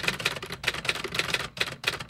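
Typewriter keys clacking in a quick run, several strikes a second.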